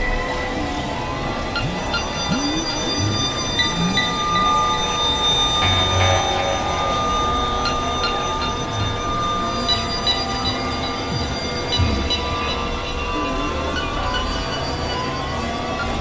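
Dense experimental electronic drone music: several steady high tones held over a noisy low bed, with many pitches gliding up and down across one another.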